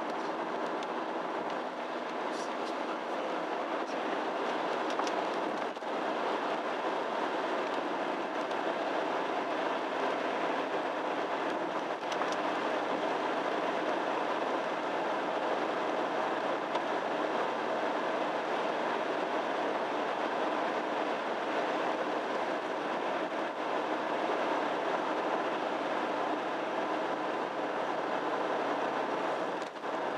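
Steady road noise heard inside a moving car with a 1.9 diesel engine: tyres on wet tarmac and the engine running at an even cruise, with no change in pace.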